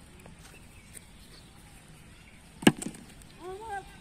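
A single sharp knock about two and a half seconds in, the loudest sound, followed at once by two lighter clicks, over faint open-air background.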